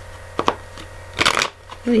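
Tarot cards being handled on a table: two quick card clicks about half a second in, then a brief rustle a little after one second, over a steady low hum. A woman's voice begins just at the end.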